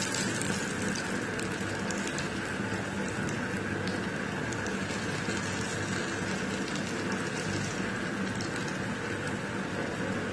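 Hot oil sizzling steadily as vegetable pakoda batter fries in a kadai, with small crackles and pops throughout.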